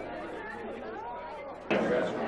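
Chatter of many people talking at once in a room, voices overlapping; near the end it suddenly gets louder.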